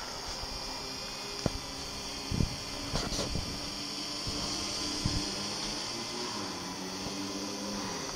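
FLIR Black Hornet PRS nano helicopter drone hovering, its small rotors giving a steady high-pitched whine, with a few faint knocks.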